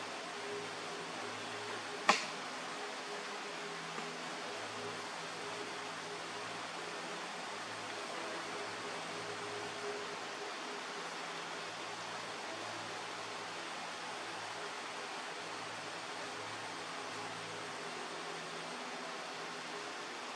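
Steady background hiss of room noise with a faint low hum, and a single sharp click about two seconds in.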